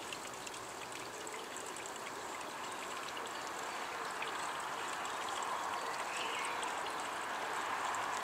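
Water flowing and trickling in a steady rush that grows slowly louder, with faint fine splashy ticks on top.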